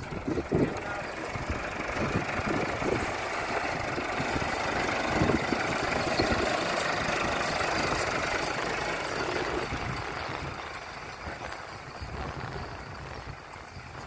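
Massey Ferguson 385 tractor's diesel engine running with a rapid, even beat, fading over the last few seconds as the tractor moves away.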